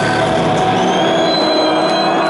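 Electric guitar feedback over a ringing amplified chord: several held high tones, some slowly rising in pitch, in place of the riffing and drumming.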